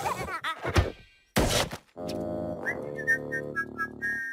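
Cartoon sound effects over music: short whistling glides and a thunk in the first second, then a brief whoosh of noise. After that a held musical chord runs under a quick rising whistle and a run of short high notes.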